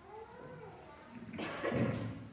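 A short, high vocal cry that rises and then falls in pitch, like a meow, followed near the end by a louder, duller thump or rustle.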